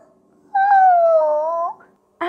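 A high, squeaky, creature-like voice: one long call starting about half a second in, dipping in pitch and then rising at its end, like a tiny animal.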